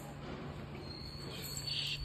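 Faint steady low hum, joined about a second in by a thin, steady high-pitched whine, with a brief hiss near the end.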